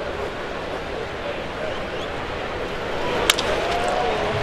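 Ballpark crowd murmuring steadily. About three seconds in comes one sharp crack of a wooden bat hitting a pitched ball, a ground ball, after which the crowd rises a little.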